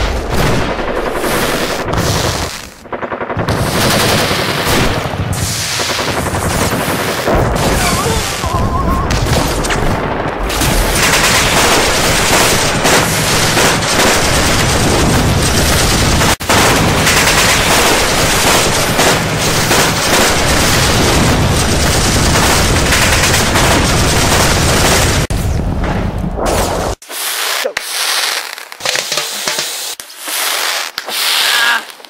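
Battle din of rapid machine-gun fire, gunshots and explosions, continuous and dense, with a dip about three seconds in. About 27 seconds in the heavy fire cuts off and only lighter crackling remains.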